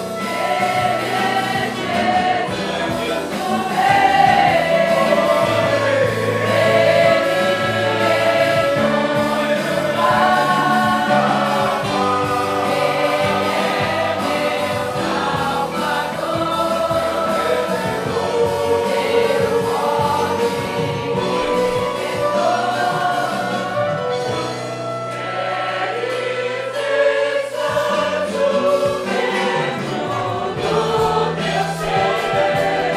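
A congregation singing a hymn together, accompanied by a small church band of acoustic guitars and violins. The singing and playing run on without a break.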